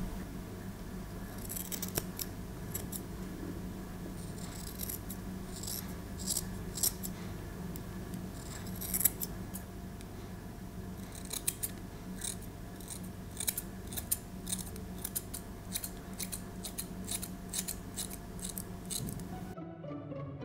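Steel grooming scissors snipping through the long fur on a dog's paw, in quick irregular runs of sharp snips. The snipping stops abruptly near the end.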